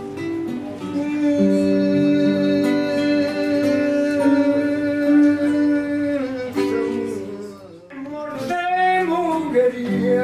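Male voice singing fado to two acoustic guitars. He holds one long note for about five seconds, the playing dips briefly near the end, and then the singing and guitars resume.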